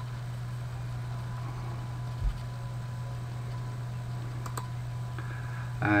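A few computer mouse clicks, one near the start and one about four and a half seconds in, over a steady low electrical hum, with a single soft low thump about two seconds in.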